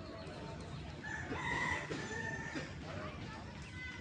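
A rooster crowing: one long crow starting about a second in, over steady outdoor background noise.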